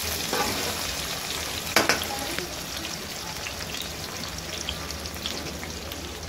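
Sliced onions sizzling in hot ghee in an aluminium kadai as a steel ladle stirs them, with one sharp knock about two seconds in.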